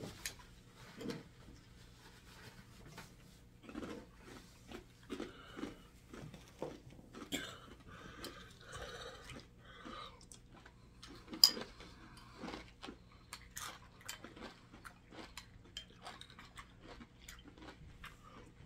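Two people chewing crunchy flake cereal in milk, with spoons scraping and clinking against ceramic bowls; a single sharp clink, the loudest sound, comes a little past the middle.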